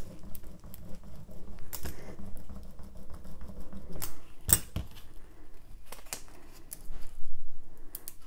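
A hand brayer's rubber roller rolling back and forth over transfer tape and vinyl on a tabletop, a low rumble with small clicks from the roller's frame, to press the vinyl decal onto the tape. A sharp knock comes about halfway through. Near the end there is louder rustling as the transfer tape and decal are handled and peeled up.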